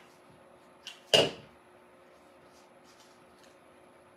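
A plastic hot glue gun set down on a hard table with one sharp clack a little after a second in, preceded by a faint click. Faint rustling of artificial greenery stems being pressed into place follows.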